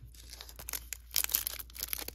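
Foil wrapper of a 2021 Bowman First Edition baseball card pack crinkling in the hands as it is torn open, with a dense run of crackles from about a second in.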